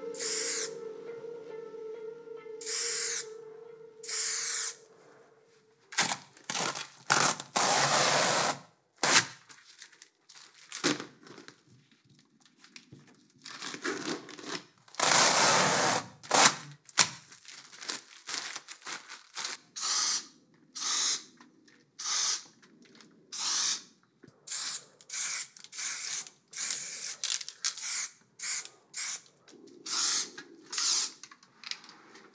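Aerosol spray-paint can spraying in repeated bursts of hiss: a few longer blasts in the first half, then a quick run of short puffs, about one or two a second, in the last ten seconds.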